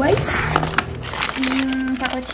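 Plastic food packages and a woven plastic shopping bag crinkling and rustling as a hand rummages through them and lifts the packs out.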